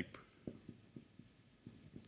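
Marker pen writing on a whiteboard: a faint run of short taps and strokes as letters are drawn.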